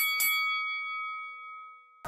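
A bell-like chime sound effect, struck twice in quick succession at the start, then ringing on and fading out over about two seconds.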